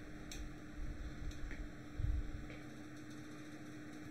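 A few faint computer mouse clicks over a steady low electrical hum, with a soft low thump about two seconds in.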